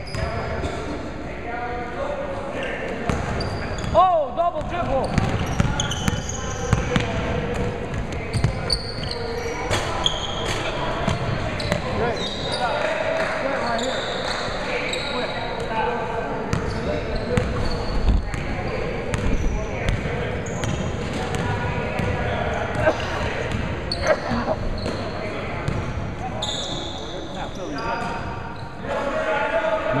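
Basketball game on a hardwood gym floor: a basketball bouncing in repeated sharp knocks, with players' and onlookers' voices echoing around the hall and a brief squeal about four seconds in.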